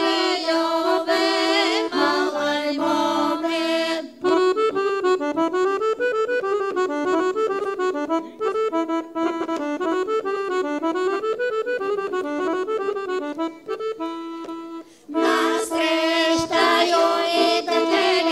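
Bulgarian folk song sung by a group of women's voices, breaking off about four seconds in for a Weltmeister piano accordion interlude, a running melody of quick notes. The women's singing comes back in about three seconds before the end.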